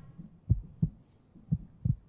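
Heartbeat sound effect: low double thuds, lub-dub, about one beat a second, played as a suspense cue during a countdown.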